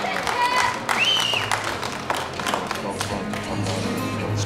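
Posing music playing over a sound system in a hall, with audience voices and scattered sharp claps or taps over it.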